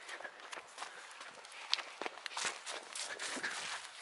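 Footsteps on dry grass and dirt: an irregular run of soft steps and crackles as someone walks.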